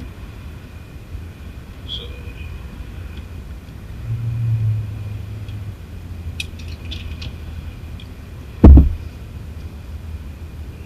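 Handling noise from a factory speaker being taken out of a car door: a few light clicks, then one heavy low thump near the end, over a steady low rumble.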